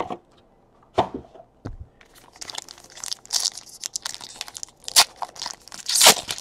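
A few separate knocks in the first two seconds, then a foil trading-card pack wrapper crinkling and tearing open by hand, with a sharp snap near the end.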